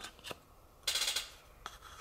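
Thin quarter-inch plywood tags being shuffled in the hands, sliding and rubbing against each other with a few light wooden clicks and a short scraping rustle about a second in.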